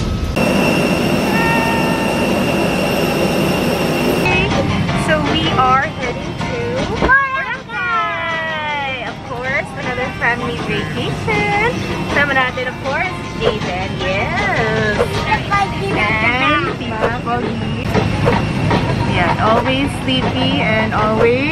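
A voice talking over background music. A steady high whine sits underneath for the first four seconds, then cuts out.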